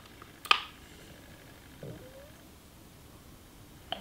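A single sharp click about half a second in, from the trigger of a handheld infrared thermometer being pressed to take a temperature reading, then a faint, short rising squeak near the middle over quiet room tone.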